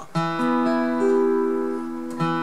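Capoed acoustic guitar played slowly with a pick: a chord strummed just after the start, then single notes picked and changed over it while it keeps ringing.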